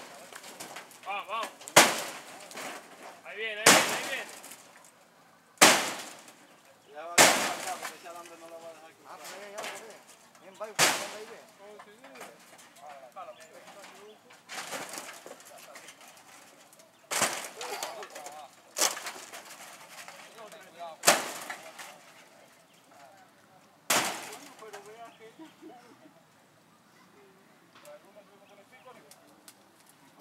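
Hard blows on the wooden frame and corrugated-metal sheets of a shack being knocked down, about ten sharp strikes a couple of seconds apart, each ringing on briefly, stopping a few seconds before the end.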